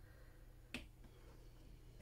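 Near silence with one short, sharp click about three-quarters of a second in.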